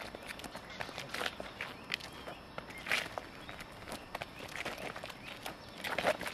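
Two people's feet stepping and scuffing on gritty paving, with irregular sharp slaps of arms meeting, during a kung fu partner drill.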